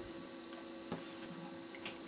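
Faint steady electrical hum, with two light clicks, one about a second in and one near the end.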